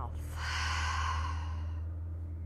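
A woman's long exhale through the mouth, a breathy sigh of about a second and a half that fades out near the end, released on the cue to let the breath go at the close of a yoga practice.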